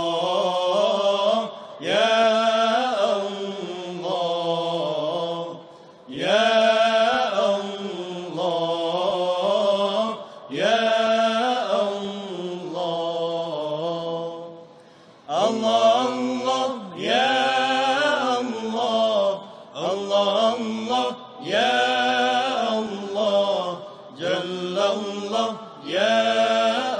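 A solo voice chanting an unaccompanied melodic devotional recitation in drawn-out phrases, several opening with a rising swoop, with short pauses between them.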